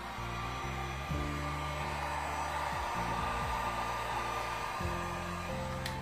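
An electric hot-air blower runs steadily with a rushing whoosh, then stops near the end with a click.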